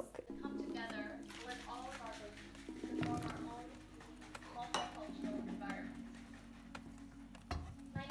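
Kitchen utensils clinking against a frying pan as zucchini slices are stirred with a wooden spatula, with a few sharp clicks, over background music with held chords.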